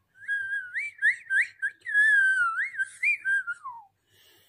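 A boy whistling through pursed lips, the air drawn in slowly: one wavering whistled tone broken by several quick upward swoops, ending near the end in a falling glide.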